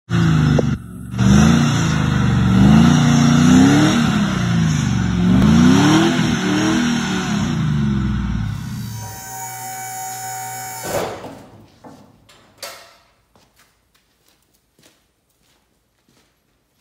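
GMC truck's engine revving up and down repeatedly under load as it crawls over rocks, with a few sharp knocks about three-quarters of the way through before the sound dies away.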